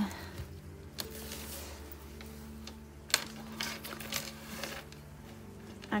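Handling noises on a desk: a wallet and small items set down and moved, a few scattered soft knocks, the sharpest about three seconds in, over quiet background music.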